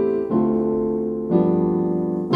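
Keyboard piano playing slow, held seventh chords: an A minor 7 about a quarter-second in, then a D minor 7 about a second later. These are the middle of an Em7–Am7–Dm7–G7 anatole turnaround in C major.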